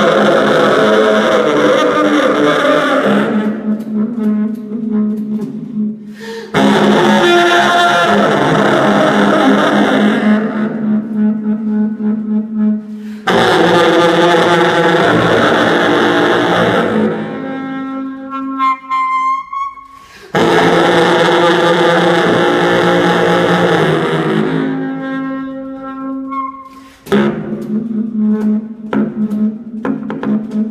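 Bass saxophone and hurdy gurdy improvising together in free jazz, in loud phrases that start abruptly about every six or seven seconds with brief drops between them, over a held low tone. A rising glide sounds about two-thirds of the way through.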